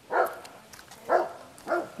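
A dog barking three times, short separate barks.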